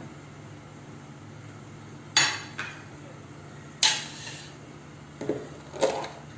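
Kitchenware being handled: two sharp clinks of a dish or utensil set down, about a second and a half apart, over a low steady hum.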